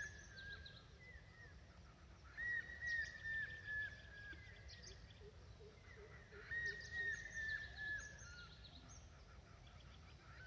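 Faint bird calling in the background: two runs of short repeated notes, each run falling slightly in pitch, about four seconds apart, with fainter higher chirps.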